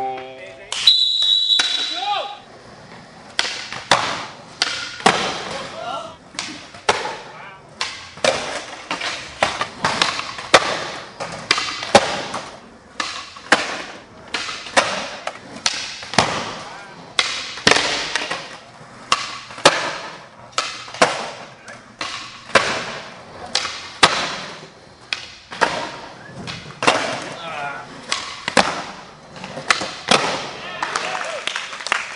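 A short shrill whistle blast about a second in, then skateboards on a concrete floor: a long run of sharp pops, clacks and landings from flip tricks, one or two a second, each echoing in the hall.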